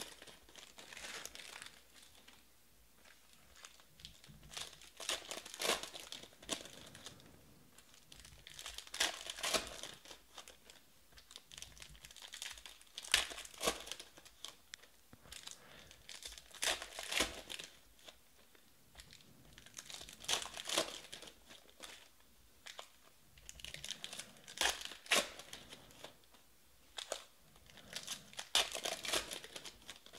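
Foil trading-card packs being torn open by hand and their wrappers crinkled, one pack after another, in bursts about every four seconds.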